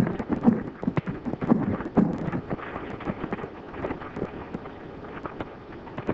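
Horses' hooves knocking unevenly on rocky ground, with scuffling thuds in the first couple of seconds, over the hiss and crackle of an old film soundtrack.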